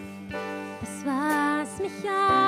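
Live worship band music: guitar and keyboard sustaining a slow chord, with a voice beginning to sing a German line about a second in.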